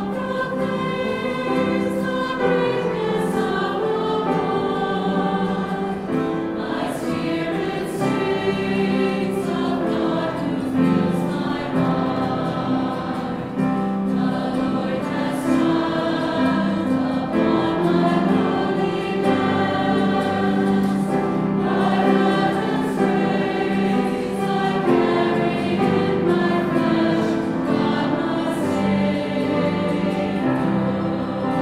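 Mixed choir of men's and women's voices singing a sustained choral piece, holding chords that change continuously.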